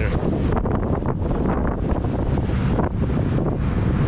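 Wind buffeting the microphone on the open deck of a moving car ferry, a heavy low rumble that rises and falls in gusts, over the wash of the ferry's churning wake.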